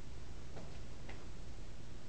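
Steady low room hum with two faint ticks about half a second apart.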